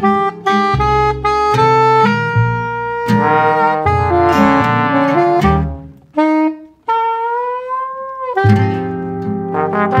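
New Orleans jazz band playing: a soprano saxophone melody over plucked bass and guitar. The band thins out briefly about six seconds in, then a long, slightly bending note is held before the full band comes back in.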